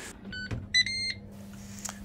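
Ninja Woodfire grill's control panel beeping twice as the bake program starts at 150 °C for 40 minutes: a short beep, then a longer, higher one about half a second later, with a light knock between them.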